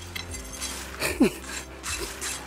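A person breathing hard, with a short falling vocal sound about a second in, a wordless exhale of excitement.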